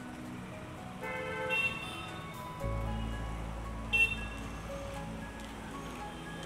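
Street traffic under music: a vehicle's deep engine rumble sets in partway through and holds steady, with a short, high, horn-like toot about two-thirds of the way in.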